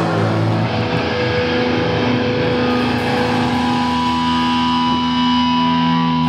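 Live punk band's distorted electric guitars and bass holding long, ringing notes, with steady high tones joining a few seconds in and almost no drum hits.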